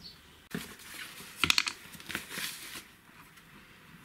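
Handling noise at a work table: scattered clicks and rustles as boards and a sketchbook are moved and touched, the loudest a quick cluster of clicks about a second and a half in.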